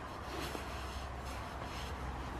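Faint rustling and shuffling of a rider's quilted jacket as she shifts on a horse's bare back, over a steady low hum.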